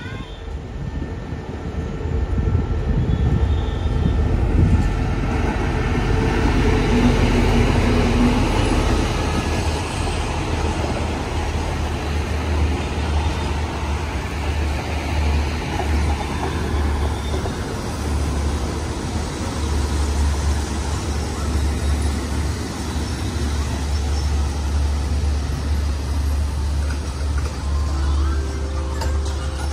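Diesel-hauled passenger train running past close by: a steady low locomotive engine drone under the rumble of carriages rolling over the rails, growing louder over the first few seconds.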